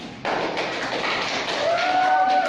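A small group of people clapping, starting about a quarter-second in, with a voice calling out in a held tone near the end.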